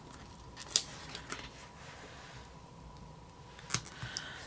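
Faint handling of planner stickers and tweezers on paper: light rustling with a few short, sharp clicks, about three-quarters of a second in, around a second later, and a sharper pair near the end.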